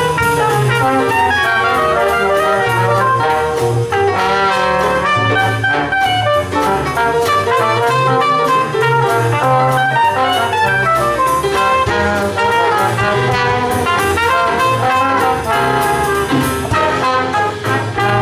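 Live traditional jazz band playing a foxtrot: trombone and other horns over double bass and drums, with a steady dance beat.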